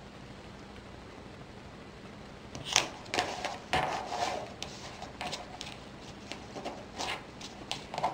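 Faint room tone for the first two and a half seconds, then a run of light taps and rustles as cardstock is handled and pressed onto a cutting mat, the sharpest tap about three seconds in.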